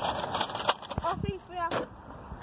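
Faint voices talking, with a few sharp knocks or clicks.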